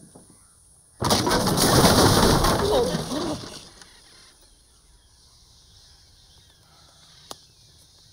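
A sudden loud rushing noise about a second in that fades out over roughly two and a half seconds, with a short warbling call inside it. Then a faint steady background and one sharp click near the end.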